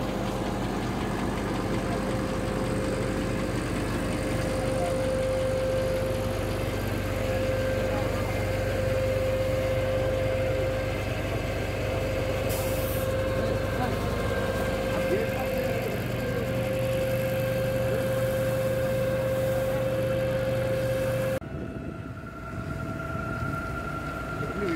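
A motor vehicle engine running steadily, with a constant hum and a steady higher tone over a noisy background, and people talking. It cuts off abruptly about 21 seconds in, where a different sound with voices takes over.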